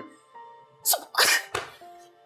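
A woman's short, breathy 'So...' about a second in, over soft background music with faint held notes.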